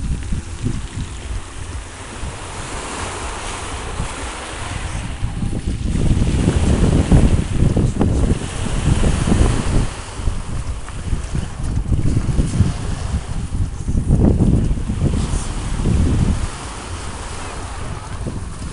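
Wind buffeting the microphone in heavy gusts through the middle of the clip, over the wash of small waves breaking on a pebble beach.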